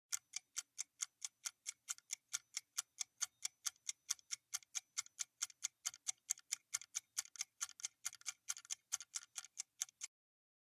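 Countdown timer sound effect ticking like a clock, a steady run of light ticks about four a second, marking the time left to answer a quiz question.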